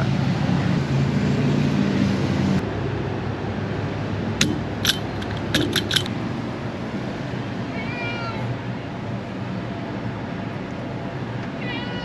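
A domestic cat meowing twice, about two-thirds of the way in and again at the very end. Before that there is a steady low hum, then a quick run of sharp clicks around the middle.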